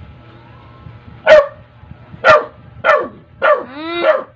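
A dog barking: four sharp barks about a second apart starting a little over a second in, then a longer drawn-out bark that rises and falls in pitch at the end.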